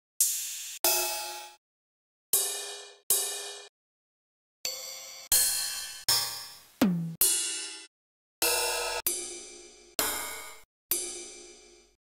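Ride and crash cymbal one-shot samples auditioned one after another in a sample browser: about a dozen separate hits, each ringing and decaying until it is cut off by the next. One hit near the middle carries a low note that slides down in pitch.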